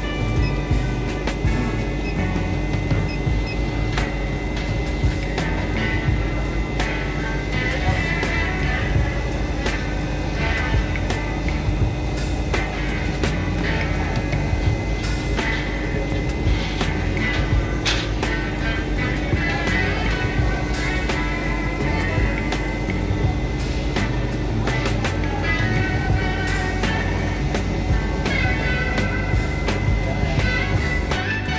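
Background music playing steadily, with a steady low hum beneath it.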